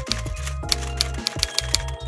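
Background music with a handful of irregular typewriter key clacks laid over it, a sound effect for text being typed out.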